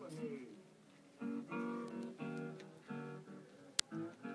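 Acoustic guitar playing chords between the sung lines of a blues recording, after a male voice finishes a line in the first half second. A single sharp click near the end.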